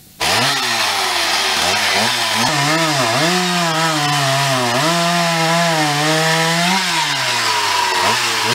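Chainsaw cutting through a large fallen tree trunk, starting abruptly and running loud and continuous. Its pitch dips and rises again several times as it cuts.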